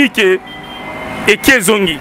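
A man talking into a handheld microphone, with a short pause in his speech about half a second in. In the pause, background road-traffic noise rises slowly under a faint steady whine.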